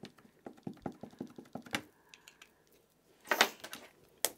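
Small ink pad of clear glue medium being dabbed quickly onto clear stamps: a run of light rapid taps, then a louder short clatter of handling at the stamping platform a little over three seconds in.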